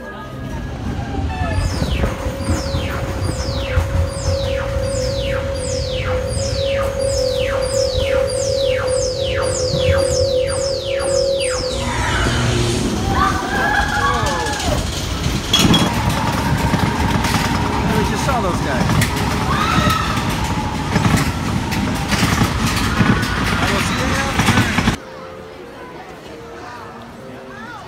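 Space Mountain indoor roller coaster ride in the dark. For about ten seconds a falling electronic whoosh repeats about one and a half times a second over a steady hum as the rocket climbs the lift. Then the coaster train runs with a loud rumble and riders' cries, and the sound cuts off suddenly near the end.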